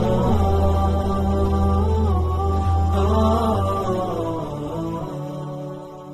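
Background music with a chanting voice over a low sustained drone, fading out over the last two seconds.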